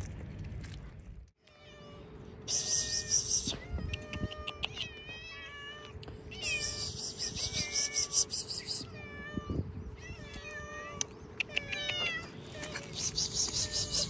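Several hungry stray cats meowing over and over, short rising-and-falling meows in quick succession, sometimes overlapping, as they come looking for food.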